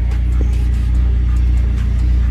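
Mitsubishi Lancer Evolution X's turbocharged 2.0-litre four-cylinder idling steadily, heard from inside the cabin, a constant low hum with no change in engine speed.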